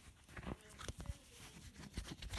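Rustling and a few light, irregular taps of Apple's Polishing Cloth and an Apple Watch being handled right up against the microphone.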